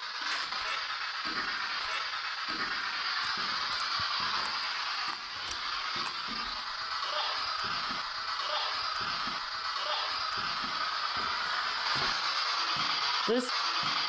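Footsteps climbing a stairway: soft, irregular footfalls a couple of times a second over a steady hiss.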